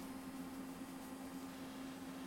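A faint steady hum with a light hiss, from running computers.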